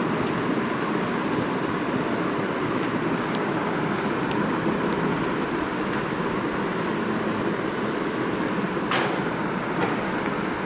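Steady background hum and hiss of room noise, with faint ticks of a marker writing on a whiteboard and one sharper tap about nine seconds in.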